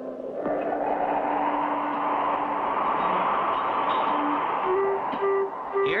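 A rushing, wind-like sound effect that swells and then dies away, with a few held low notes of music under it.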